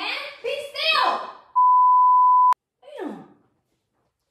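A woman's voice off-camera, then a loud, steady one-pitch beep at about 1 kHz for about a second, ending abruptly: an edited-in censor bleep. A brief falling vocal sound follows.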